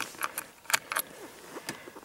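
A key ring jangling at a Yamaha ATV's ignition switch: a handful of light, irregular metallic clicks and ticks.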